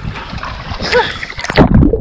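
Sea water splashing and sloshing around a microphone at the surface, with a short cry from a swimmer about a second in. About one and a half seconds in the microphone goes under the water and the sound turns to a muffled underwater rumble.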